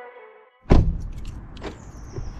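Background guitar music fading out, a brief gap, then a sudden cut to outdoor street sound: a thump followed by a steady low rumble, with a second knock about a second later.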